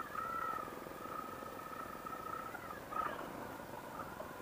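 Motorcycle engine running at low speed in slow riding, heard faintly as a fine, even pulsing, with a steady high whine over it.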